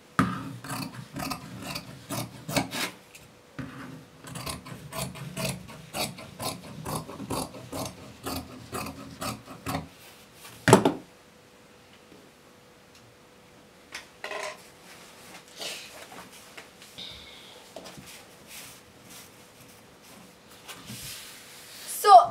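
Scissors cutting through folded satin along a chalked curve: a quick run of crunching snips for about ten seconds, then one sharp click, then fewer, quieter snips and fabric handling toward the end.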